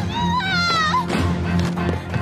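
A woman's high-pitched wailing cries for help, one long cry in the first second and a short one after it, over background music with a steady low drone.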